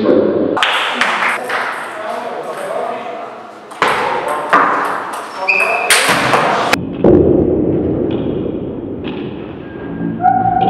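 Table tennis rally: the ball struck by the bats and bouncing on the table, heard as several sudden knocks with short ringing tones between them.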